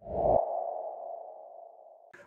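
Transition sound effect for an animated title card: a short low hit at the start and a steady mid-pitched, ping-like tone that slowly fades away over about two seconds.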